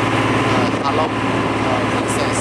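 A small boat's engine running steadily with an even low hum, heard from on board, with a brief voice over it.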